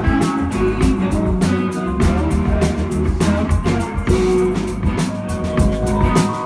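Live rock band playing an instrumental passage: electric guitar lines over drum kit and bass guitar.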